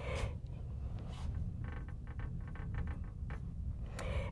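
Felt-tip marker writing a word on a glass lightboard: faint short squeaks and scratches of the tip on the glass, over a low steady hum.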